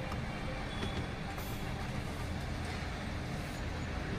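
Steady low vehicle rumble heard inside the cabin of a parked Toyota Innova Hycross that is switched on, with a faint steady hum over it.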